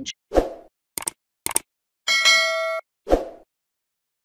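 A short run of outro sound effects: a low thud, two quick sharp clicks, a bright bell-like ding lasting under a second, then another thud.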